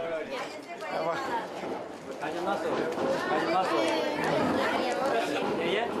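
A group of people talking over one another in lively, overlapping chatter.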